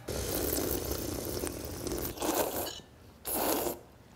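A person slurping hot kalguksu broth from a stainless-steel bowl: one long sip of about two seconds, then two short slurps.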